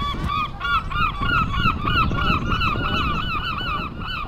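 A flock of geese honking, many short calls overlapping several times a second, over a low background rumble.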